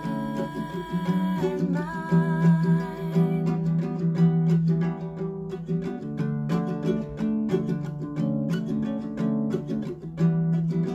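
Ukulele strummed in a steady rhythm, with a woman singing held notes over the first three seconds or so; after that the strumming goes on alone.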